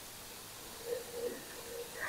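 Homemade pet-nat sparkling wine foaming out of the freshly opened bottle and fizzing into a wine glass, a faint steady hiss. The gushing foam is the sign of too much carbonation, which the winemaker says she miscalculated.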